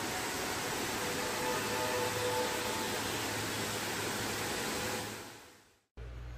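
Waterfall's rushing water, a steady even rush that fades out about five seconds in.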